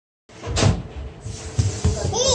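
A few dull thumps from rubber party balloons being batted and bumped by a child's hands. The loudest comes about half a second in, with two more near the end, over a faint steady hum.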